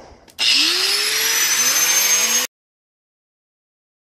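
Four-inch angle grinder with a thin metal-cutting disc switched on with a click, the motor spinning up with a rising whine and running loudly for about two seconds before it stops suddenly.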